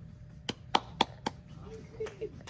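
Four sharp taps, evenly spaced at about four a second, over a low murmur in a reverberant hall.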